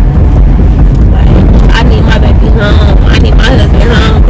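Loud, steady low rumble of road and engine noise inside a moving Honda minivan's cabin. A woman's voice comes in over it from about a second in.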